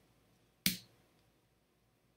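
A single sharp click of a computer keyboard key, the Enter key pressed once about two-thirds of a second in; otherwise quiet.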